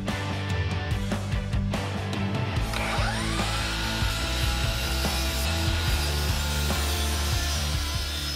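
DeWalt FlexVolt brushless miter saw cutting through stacked birch plywood: the motor spins up with a rising whine about three seconds in, holds a steady pitch through the cut, and winds down near the end. Background music plays underneath.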